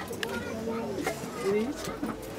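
Indistinct voices of people talking in the background, with a few light clicks.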